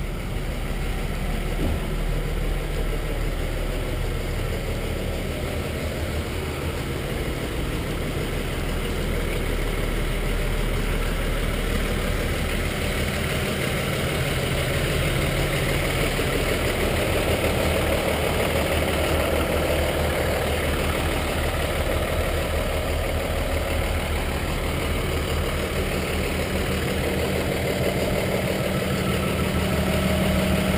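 Diesel engine of a Hino 338 box truck idling steadily, a little louder in the second half.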